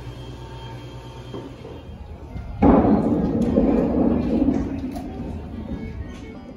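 A low steady hum, then a sudden loud rushing noise about two and a half seconds in that slowly fades away.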